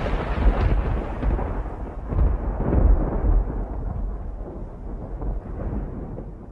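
A deep rolling rumble over a hissing wash, like thunder, that swells a few times in the first half and then slowly fades.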